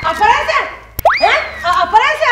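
Comic cartoon sound effect: a click, then a swooping whistle that shoots up sharply and slowly slides back down, about a second in, laid over talking.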